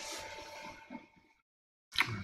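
Faint room tone: a soft hiss with a steady, quiet electrical hum, which cuts to dead silence a little over a second in.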